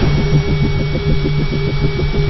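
Sound effect for a logo animation: a loud, rapidly pulsing low rumble, about eight pulses a second, under a hiss of noise, with a thin steady high tone.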